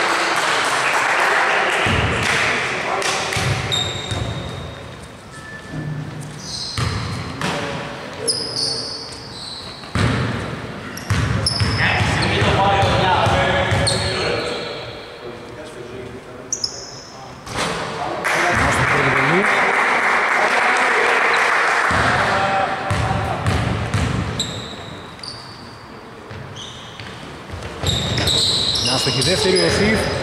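Basketball bouncing on a hardwood court, with short high squeaks and players' voices echoing in a large gym, around two free throws after a foul.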